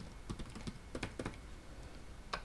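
Typing on a computer keyboard: a quick run of about eight faint keystrokes in the first second and a half.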